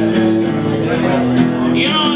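Live acoustic blues: two acoustic guitars strumming and picking a steady groove.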